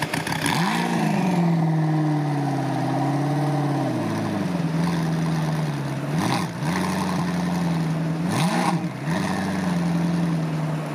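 A vehicle engine running at a steady speed, its pitch rising and falling briefly a few times: near the start, a little past the middle and near the end.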